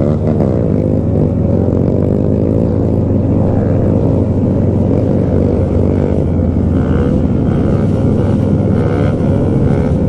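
Motorcycle engines running under way in a group ride, with the rider's own bike loud and steady. Engine pitch rises and falls in the first couple of seconds as throttles are worked.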